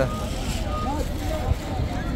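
Street ambience: several people's voices chattering indistinctly over a steady low rumble of road traffic, with one short knock about one and a half seconds in.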